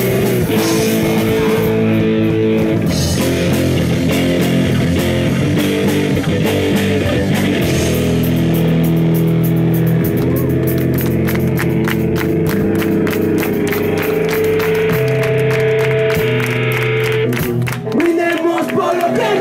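Live punk rock band playing loudly on electric guitars and drum kit, the guitars holding sustained chords. About halfway through the drums break into fast, regular hits with cymbals.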